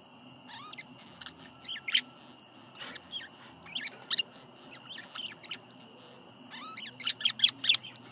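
Budgerigars chirping in short, scattered calls, breaking into a quick run of chirps near the end.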